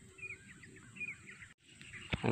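Faint bird chirping: a few short, quick notes in the first second and a half, over a low rustle.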